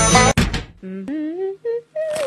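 Banjo-led bluegrass music stops abruptly about a third of a second in. A person then hums a few short wordless notes, the first rising in pitch and a later one falling.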